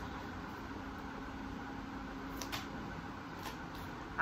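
Low steady room hum, with a few faint ticks from a tarot deck being shuffled by hand.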